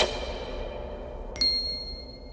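Logo-sting sound effects: a whoosh dies away over a low rumble. About one and a half seconds in, a single bright ding strikes and rings out, slowly fading.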